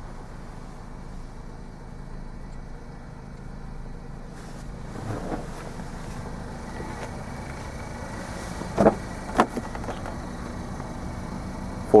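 The 2014 Ford Focus's 2.0-litre four-cylinder engine idling, a steady low hum heard inside the cabin. Two sharp clicks about half a second apart come about nine seconds in.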